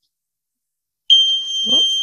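Arduino-driven electronic buzzer sounding one steady, high-pitched continuous beep, switched on from a web app. It comes on about a second in, after a pause that its builder puts down to poor pin connections.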